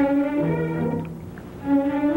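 Orchestral background music: violins over lower strings playing a few held notes that change every half second or so.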